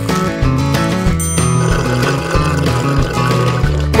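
Background music with a changing bass line, and a short high chime about a second in.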